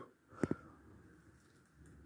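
Quiet room tone with two short clicks close together about half a second in.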